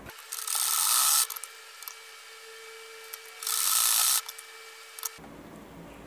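Usha sewing machine stitching in two short runs, each about a second long and about three seconds apart, as a Velcro strip is sewn onto towelling fabric.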